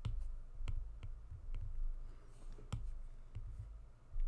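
Stylus clicking and tapping on a pen tablet while drawing, a series of sharp, irregularly spaced clicks with the loudest about two and three-quarter seconds in, over a steady low electrical hum.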